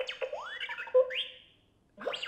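Electronic R2-D2 beeps and rising whistles from a light-up R2-D2 Mickey-ears headband's built-in speaker: a short string of chirps that stops about a second and a half in.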